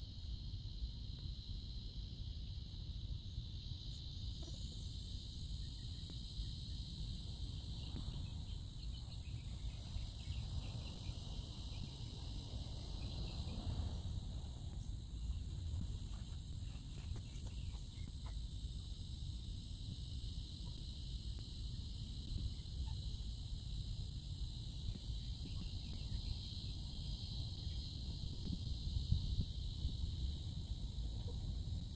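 Steady chorus of insects, a continuous high-pitched buzzing at two pitches, over a low steady rumble.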